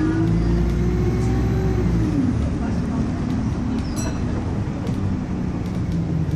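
Alexander Dennis Enviro200 single-deck bus heard from inside the saloon while driving. The engine and drivetrain whine rises in pitch, then drops away about two seconds in, over a low rumble with scattered light rattles.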